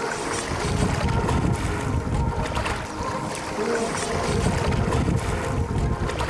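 Small lake waves washing onto a sandy shore, with wind buffeting the microphone in an uneven, surging rumble.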